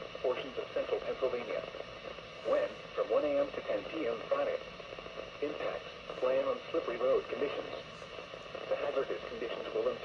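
NOAA Weather Radio broadcast voice reading a winter weather advisory, heard through a Reecom weather alert radio's small speaker.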